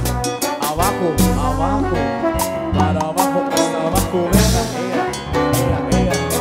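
Live cumbia band playing an instrumental break: a trombone-led brass melody over a steady bass line and percussion, with no singing.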